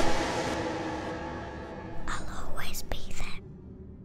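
The trailer's music fades out on a reverberant tail, then a short whispered voice comes in about two seconds in and stops after just over a second.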